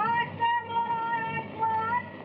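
A high voice glides up into one long held sung note.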